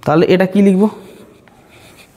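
A man speaks briefly, then a felt-tip marker writes faintly on a whiteboard for about a second in a small room.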